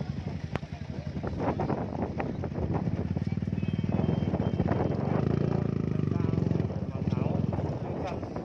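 Motorcycle engine running close by, getting louder through the middle and easing off near the end, with the chatter of a crowd of people around it.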